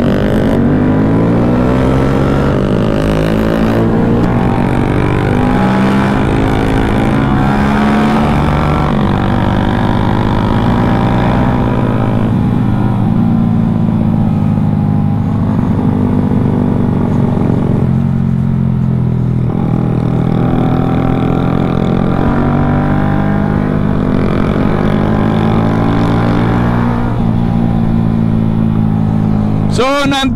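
Yamaha Y15ZR's 150 cc single-cylinder four-stroke engine running under way, its pitch climbing and then stepping down again several times as the bike accelerates and shifts gears, over a steady rumble of wind on the microphone.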